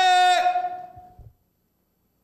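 A man's long, high-pitched shouted "weee!", held on one pitch, fading and breaking off about a second in.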